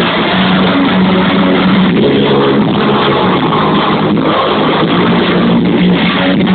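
Live punk rock band playing loud, distorted electric guitars over bass and drums, without vocals, in a muffled, low-fidelity recording.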